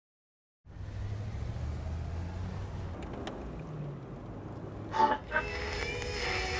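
Low, steady rumble of a pickup truck driving by, starting after a brief silence. Near the end come two short, loud bursts, the first the louder, as an old car radio's dial is tuned between stations.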